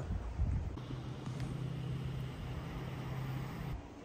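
A low, steady motor hum, like a vehicle engine running, over outdoor background noise. It stops shortly before the end.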